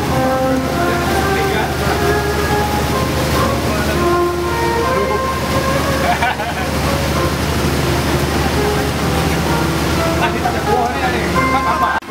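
A boat's engine running steadily with water rushing past the hull as it moves, under music with held notes and people's voices.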